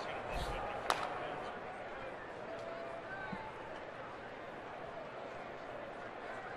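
Steady murmur of a ballpark crowd, with faint scattered voices and one sharp pop about a second in.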